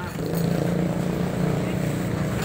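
Steady low engine hum of road traffic close by, running evenly without a clear rise or fall.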